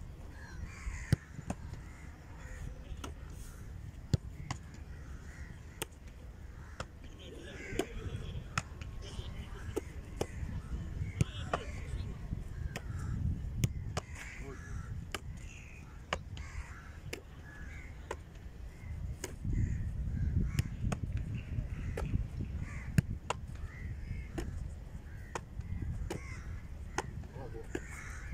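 Football kicks and goalkeeper catches: scattered sharp thuds of the ball being struck and caught, a few of them loud, over a low rumble of wind on the microphone.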